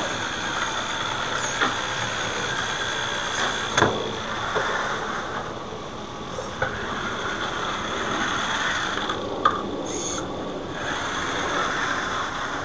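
FTC competition robot driving on mecanum wheels: its electric drive motors and gearboxes give a steady high whine over a rattling drivetrain noise that rises and falls as it moves. A few sharp clicks of mechanism parts come through, about a second and a half in, about four seconds in and near the ninth second.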